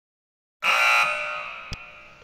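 An electronic sound effect with the title card: a sudden chord-like tone that starts about half a second in and fades away over about a second and a half. A short click comes near the end.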